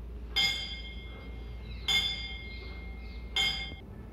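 Three bright, bell-like metallic chimes about a second and a half apart, each ringing briefly and then cut short.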